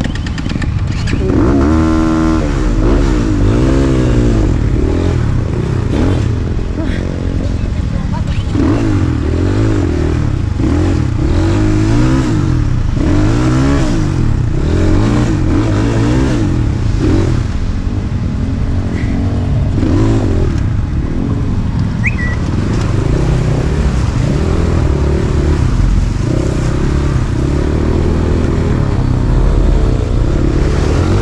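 Enduro dirt bike engine revving up and down in repeated throttle bursts as the bike is worked slowly over rocks and down into a creek.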